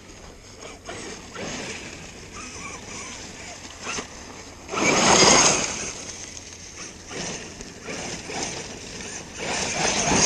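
8S Losi DBXL-E 1/5-scale electric buggy driving some way off: a low rushing of its drivetrain and tyres, with two louder surges, one about five seconds in and another near the end.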